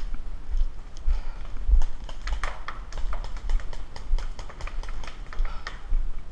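Paintball markers firing, a rapid, irregular run of sharp pops that grows thickest in the middle, over low thumps of the wearer moving.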